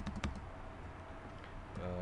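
A few quick computer keyboard clicks in the first moment, then a low steady hum.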